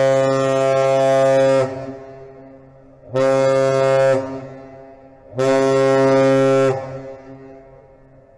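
Ship's horn on the departing bulk carrier Ruddy, a deep steady single-pitched horn sounding one long blast and then two short ones, each trailing off in an echo: the long-short-short master salute a ship gives on leaving port.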